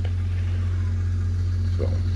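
Polaris Sportsman 400 ATV engine running steadily on charcoal gas from a homemade gasifier, a constant low, pulsing drone.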